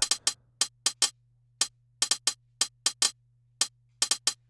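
Reason Redrum drum machine playing a programmed hi-hat pattern: short, crisp ticks in an uneven rhythm, some of them flammed into close double hits. The flam amount is being turned down, so the two strikes of each double hit come closer together.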